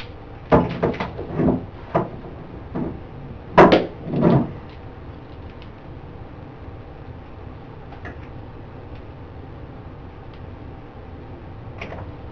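A run of short knocks and thuds, objects handled on a wooden desk, with the loudest pair about three and a half to four and a half seconds in, then only steady room hum with a faint tick or two.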